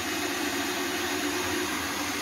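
A Moulinex electric kitchen machine with a drum grater attachment runs steadily, its motor humming as it shreds carrots.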